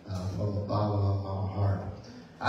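A man's voice through a microphone, chanting in a drawn-out, sung tone. It is one long held phrase that fades out near the end.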